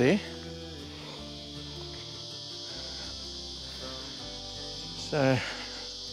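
A steady, high-pitched chorus of insects, with soft background music of slow, sustained chords underneath.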